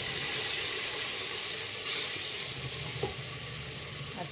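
Onion-tomato masala with freshly added ground spices sizzling in hot oil in a pot, the sizzle swelling briefly about halfway through. A wooden spatula stirs and scrapes through the mixture as it fries.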